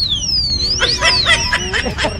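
Motorcycle security alarm sounding: a high siren tone that sweeps down and up, then breaks into a fast run of short electronic chirps.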